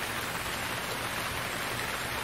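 A steady, even rushing noise like heavy rain, with no tune or beat.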